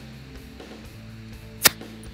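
Soft background music with steady held tones, and a single sharp click near the end.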